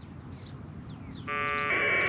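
Packet radio data burst from the transceiver's speaker: a steady, buzzy two-tone AFSK warble. It starts about two-thirds of the way in, after a lull with only faint hiss, and fills out moments later as the data stream comes through.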